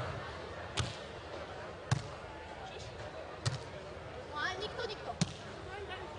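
Beach volleyball struck by hand in a rally: four sharp slaps on the ball, a second or more apart, as it is served, passed, set and attacked.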